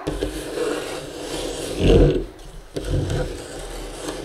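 Handling noise: scraping and rubbing against the microphone or the microscope, with two heavier bumps about two and three seconds in.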